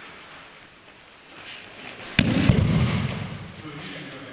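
An aikido breakfall onto tatami mats: one sharp, loud slap of the thrown partner's body hitting the mat about two seconds in, followed by about a second of duller low rumbling as the body comes down and settles.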